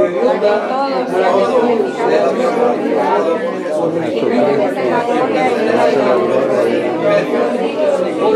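Congregation reading a Bible verse aloud together in Spanish: many voices overlapping in a large, echoing hall.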